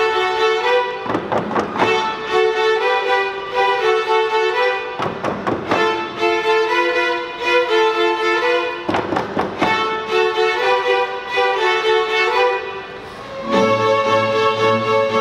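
A string orchestra of violins, cellos and double basses playing, with sharp accented strokes about every four seconds over held notes. Near the end the sound briefly drops away, then the low strings come in.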